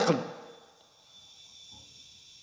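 A man's spoken word ends about half a second in, followed by a pause of faint room hiss with a thin, steady high-pitched tone.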